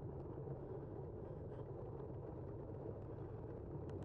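Steady tyre and wind rumble of a bicycle rolling on asphalt, picked up by a bike-mounted camera, with a few faint ticks and one sharper click near the end.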